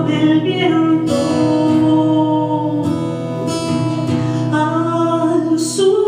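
A woman singing while strumming an acoustic guitar in a live song.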